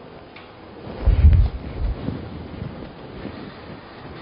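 A low rumble of wind-like noise on the microphone about a second in, lasting under a second, over faint steady background hiss.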